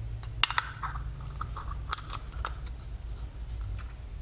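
Hands handling a PVC pipe end cap and working a rubber inner-tube valve stem through a hole drilled in it: a few sharp plastic clicks and scraping sounds.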